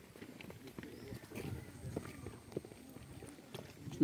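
Quiet outdoor ambience with faint, irregular soft ticks and rustles.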